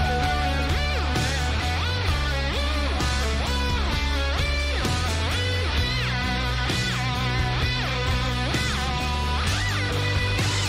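Electric guitar solo with a distorted whine, its notes bent up and down by pushing the string, over a steady bass line in a rock ballad.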